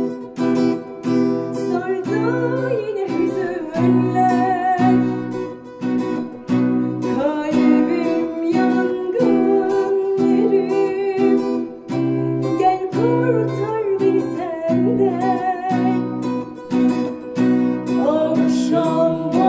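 Acoustic guitar strummed in a steady, even rhythm, accompanying a woman's singing voice whose melody wavers and glides in pitch.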